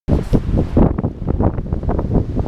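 A stiff breeze buffeting the microphone of a handheld action camera: a loud, uneven rumble that starts abruptly as the recording begins.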